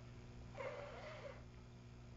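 A single short, wavering high-pitched vocal sound, about a second long, over a faint steady hum.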